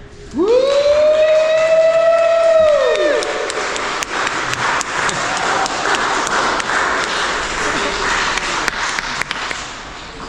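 A long, high held note that glides up, holds for about three seconds and falls away, then steady applause and cheering from a crowd of wedding guests.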